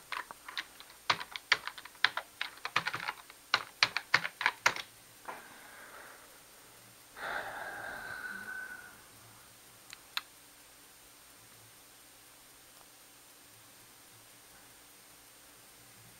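Typing on a computer keyboard: a quick run of key clicks for about five seconds, then a short rushing noise about seven seconds in and a single click near ten seconds, over a faint low hum.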